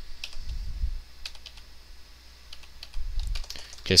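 Keystrokes on a computer keyboard: a scattering of separate clicks with pauses between them while code is typed. Two short low rumbles come in, about half a second in and about three seconds in.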